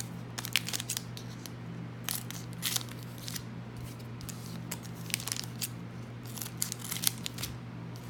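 Foil hockey card pack wrappers crinkling and crackling in irregular short bursts as packs are picked up off a stack and handled. A steady low hum runs underneath.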